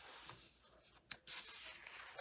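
Faint rustle of a coloring book's paper page being handled and turned, with a short sharp tick about a second in.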